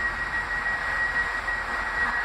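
Stationary Class 195 diesel multiple unit running at a platform: a steady hum and rush of its engine and fans, with a steady high whine over it.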